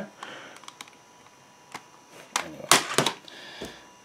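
Handling noise: a few scattered sharp clicks, then a cluster of louder clicks and knocks a little past halfway, as hard plastic objects are moved about.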